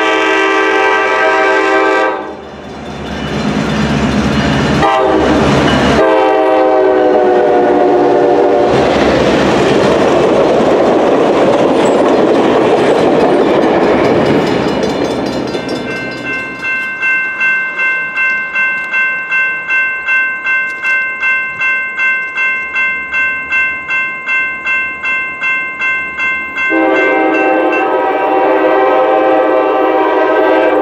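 Diesel locomotive air horn blowing long blasts as a train approaches, followed by the loud rumble of the train passing close by. Then a grade-crossing bell rings about twice a second, and near the end the horn blows again.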